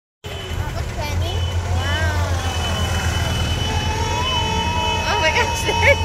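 Golf carts driving past with a steady low motor hum, with people's voices over it and a voice breaking into laughter near the end.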